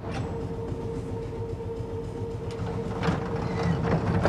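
Old Glasgow Underground train car: a steady rumble with a constant whine, and a few knocks in the last second and a half.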